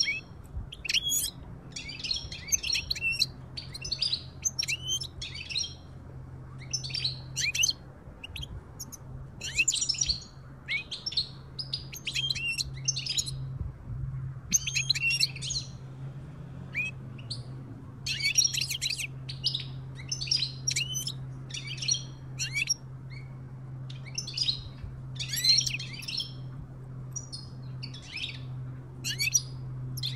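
European goldfinches twittering: quick bursts of high, chattering notes every second or so, some overlapping, with a steady low hum underneath.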